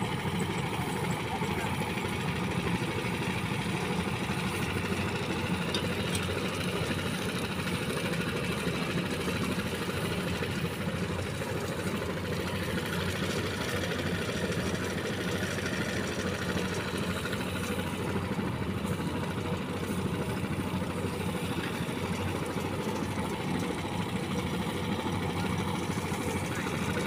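Small stationary engine of a power rice thresher running steadily at a constant speed, driving the thresher.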